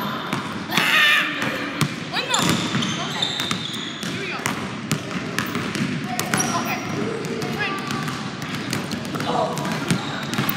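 Basketballs bouncing on a hardwood gym floor, many short sharp bounces scattered through, with voices in the gym.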